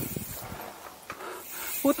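Mountain bike rolling along a dirt trail: a low hiss of tyres and air with a few light rattles, easing off after the first half second. A man's voice starts right at the end.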